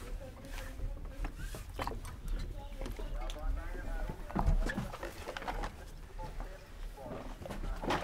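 Indistinct voices of people talking, over a steady low rumble, with a few short knocks and thuds, the loudest about four and a half seconds in.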